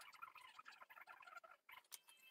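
Near silence with faint, scattered scratching of a fine paintbrush on a painted model horse.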